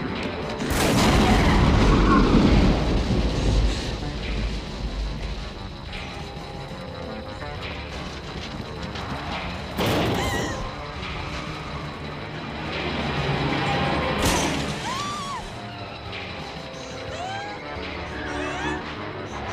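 Mixed action-film soundtrack of a night car sequence: orchestral score under heavy crash and boom effects. A long, deep rumbling impact fills the first few seconds, a sharp crash comes about ten seconds in and another about fourteen seconds in, with short squeals after it.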